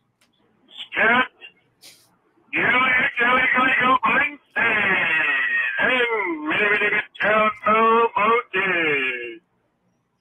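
A man's voice over a telephone line, making long, drawn-out vocal calls: several sustained phrases whose pitch glides and wavers, after one short burst about a second in.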